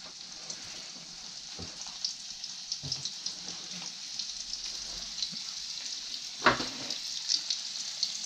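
Breaded yellow jack fillets shallow-frying in a pan of oil: a steady sizzle full of small crackling pops. A few short knocks come through it, the loudest about six and a half seconds in.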